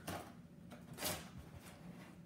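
Knife blade slitting the packing tape on a cardboard box: faint scraping and small ticks, with one brief louder scratch about a second in.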